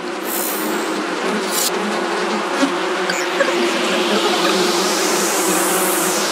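Intro of a psybient electronic track: a dense, buzzing insect-like swamp texture with the bass cut away, and a hissing filter sweep rising in pitch through the second half, peaking near the end.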